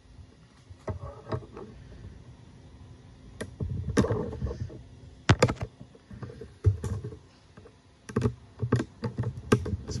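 Irregular light clicks and knocks of things being handled on the workbench, about a dozen, scattered and busier in the second half, over a low rumble.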